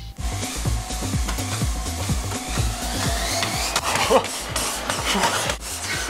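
A treadmill running fast, its belt and motor making a steady rushing noise under the quick, regular thud of a runner's feet on the deck. A short falling cry from the runner comes about four seconds in.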